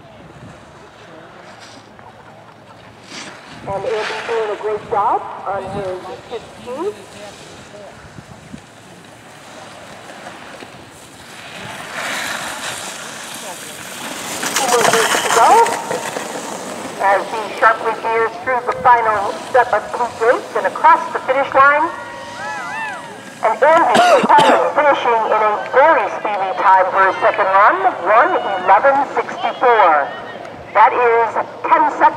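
A sit-ski's single ski hissing across the snow as it passes close, building and fading over a few seconds near the middle. After it, people's voices calling out and talking through the rest.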